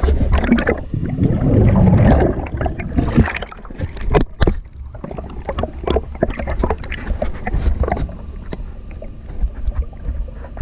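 Underwater bubbling and gurgling as air bubbles rise past a camera below the surface, over a steady low rumble, with scattered sharp knocks; the bubbling is loudest between about half a second and two seconds in, and there is a sharp knock just after four seconds.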